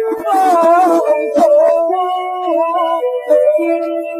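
Cantonese opera song music from a 1930 Victor 78 rpm record: a wavering, gliding melody line over held notes, with a few sharp clicks.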